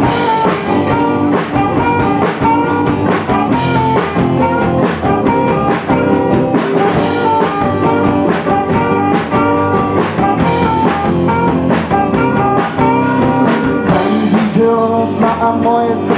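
Live rock band playing loudly: saxophone over electric guitars, bass guitar and drum kit, with no sung lines in this stretch.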